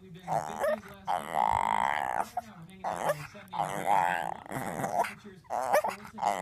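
A puppy making a run of drawn-out, wavering whine-howls that sound like "mama", several in a row with short breaks. She is begging for a bite of food.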